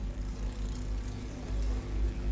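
A pause in speech filled by a low steady hum with faint background noise, the kind of mains or sound-system hum picked up by a lecture microphone.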